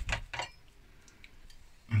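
A metal spoon clicking and scraping a few times against a ceramic plate while a scoop of mashed potato is spooned onto it, then quiet room tone.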